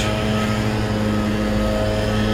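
A steady mechanical hum: a low drone with a few fainter higher steady tones above it, unchanging throughout.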